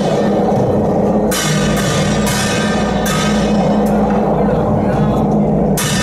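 Temple procession drum and brass gong being beaten on their carts: four strokes, each gong stroke ringing on with a long shimmer, over a steady low drone of drumming.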